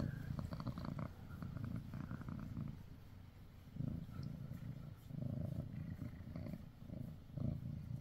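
Domestic cat purring close to the microphone, a low rumble that swells and fades with each breath, about every second and a half.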